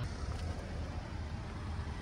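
A low, steady engine rumble.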